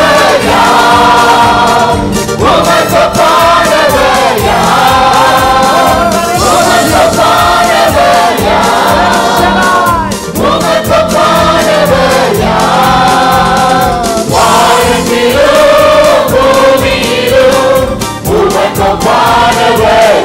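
Live Christian worship song: a male lead singer and a group of backing singers singing together in phrases of about two seconds, over instrumental backing with a steady beat.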